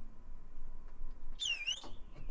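A single short whistled bird call about one and a half seconds in, its pitch dipping and then rising back, over a faint low rumble.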